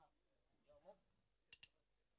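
Near silence: faint distant voices, then two sharp clicks in quick succession about one and a half seconds in.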